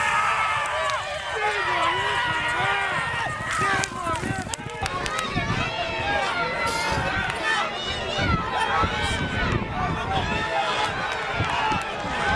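Excited shouting from people at the track as racehorses break from the starting gates and gallop, several voices overlapping with no clear words.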